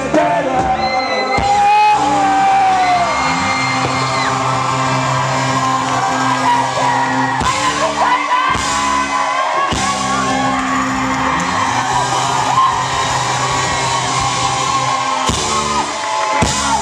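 Indie rock band playing live and loud, with singing over sustained chords and a crowd yelling and whooping along.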